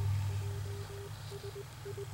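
A single-pitch beep keyed on and off in short and long pulses, like Morse code dots and dashes, over a steady low hum.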